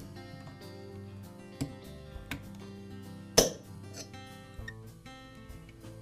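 Soft background music with a few sharp metal clicks from needle-nose pliers working a metal wire clip off a chainsaw; the loudest click comes about three and a half seconds in.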